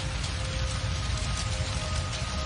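Crackling fire sound effect with a deep low rumble, under soft sustained music tones.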